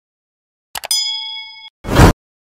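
Sound effects of a subscribe-button animation: two quick mouse clicks, then a bright bell-like ding that rings for under a second and cuts off suddenly, followed by a short loud noise burst near the end.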